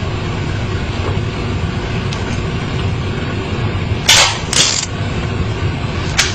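A revolver being handled over a steady low rumble: two short, sharp noises from the gun about four seconds in, half a second apart.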